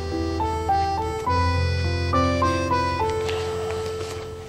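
Dramatic score playing: a slow melody of held, reedy-sounding notes moving step by step over a sustained low bass.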